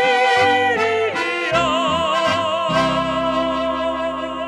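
Slovenian folk band playing the closing bars of a song live: a man and a woman singing in harmony over guitar and band accompaniment, settling about halfway through onto a long held final chord sung with vibrato.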